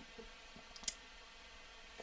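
Quiet room tone with a single short click a little under a second in.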